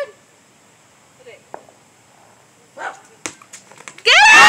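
A basketball dropped onto a concrete walk: one sharp bounce a little over three seconds in, followed by a few lighter knocks.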